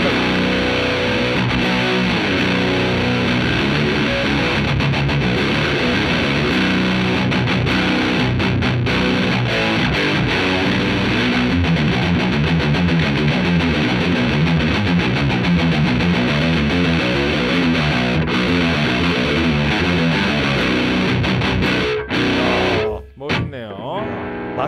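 Ibanez RGMS7 seven-string multi-scale electric guitar played through a Fender Twin Reverb amp with a Red Rox pedal switched on, in a fast run of single notes and riffs. The playing stops about two seconds before the end.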